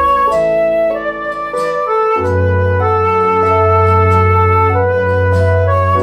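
Background music: a slow melody of long held notes over a steady deep bass note that comes in about two seconds in.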